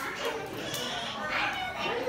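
Overlapping chatter of children's voices, with adults talking among them.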